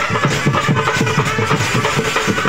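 Dance music driven by fast, even drumming, about five or six strokes a second, with a held note running over it.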